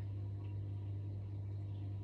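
Steady low hum under a faint even hiss, with no other sound: the background of a room with a running reef aquarium and its fan.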